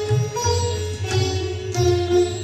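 An ensemble of sitars playing a melody together in Indian classical style, sharply plucked notes ringing on and shifting in pitch.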